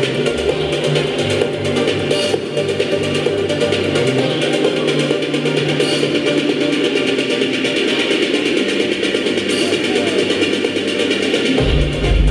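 Loud live electronic dance music through a venue PA. The deep bass drops out about four seconds in, then a heavy bass beat comes back in just before the end.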